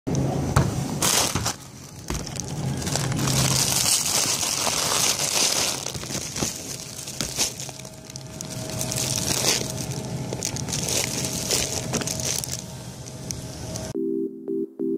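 Groceries being packed into a reusable shopping bag, heard from inside it: the bag and plastic-wrapped packages rustle and crinkle, with small knocks as items drop in.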